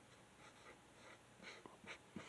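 Dry-erase marker writing on a whiteboard: a series of faint, short scratchy strokes.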